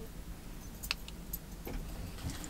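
Faint clicks and handling noise from a hand-held plastic LED work light being turned over in the hands, with one sharper click about a second in, over a low steady hum.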